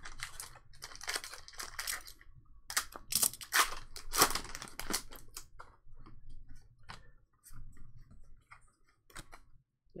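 Foil wrapper of a Pokémon booster pack being torn open and crinkled by hand, heard as a run of short rustling bursts over the first few seconds. After that come sparse faint clicks of the trading cards being handled.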